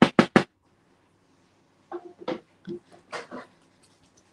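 Small bottle of Distress Oxide reinker ink shaken hard, a metal mixing ball rattling inside in quick strokes about seven a second that stop about half a second in. A few fainter, shorter sounds follow about two and three seconds in.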